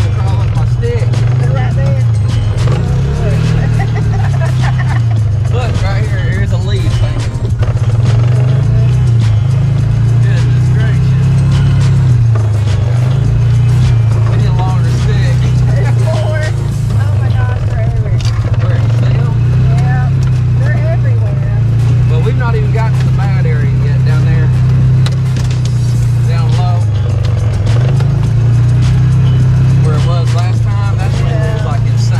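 Engine of a Polaris 500 Crew side-by-side running as it drives a woodland trail, its pitch rising and falling with the throttle. Over it plays music with a sung vocal.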